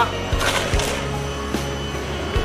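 Background music with steady sustained tones and a few low knocks.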